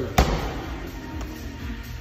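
A medicine ball slammed once onto a rubber gym floor shortly after the start, a sharp thud, with background music playing throughout.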